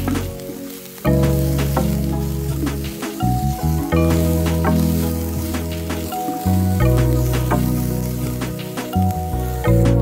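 Background music with sustained chords and a changing bass line, over chopped onions sizzling in a hot metal pan as a wooden spatula stirs and scrapes them.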